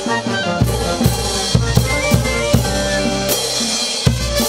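A Peruvian brass band playing a chimaychi: saxophones and clarinets carry the melody over bass drum strikes and cymbal crashes. The low drum sound drops out briefly at the start, and the bass drum comes back in about half a second in.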